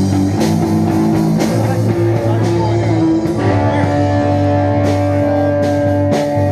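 Live rock band playing: amplified guitar with long held notes over a steady low line and a drum kit.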